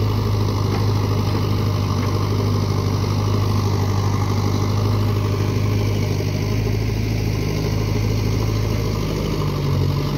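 Diesel engines of a JCB backhoe loader and a Massey Ferguson tractor running steadily at low revs, a deep, even hum.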